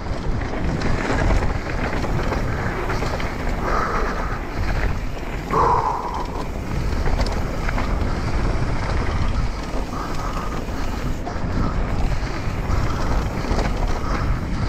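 Wind rushing over the microphone of a mountain bike's onboard camera, with the tyres rolling over a slightly moist dirt trail at speed.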